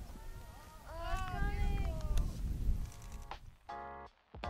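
Low wind rumble on the microphone with a person's wordless vocal sounds about a second in, then background music with plucked and keyboard notes comes in near the end as the rumble drops away.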